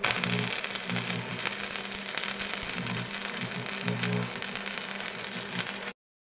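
Crackling, hissing sound effect with a low electric buzz that comes and goes, in the manner of a welding arc. It cuts off abruptly just before the end.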